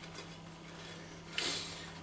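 Quiet room tone with a steady low hum, and one short, brief noise about one and a half seconds in.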